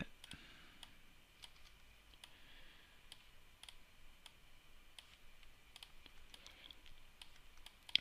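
Faint, irregular clicks of a computer mouse and keyboard over a low hiss, as joints are selected and dragged into place in the software.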